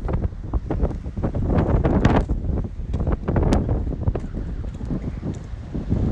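Wind buffeting a phone's microphone: a loud, gusty rumble with irregular thumps.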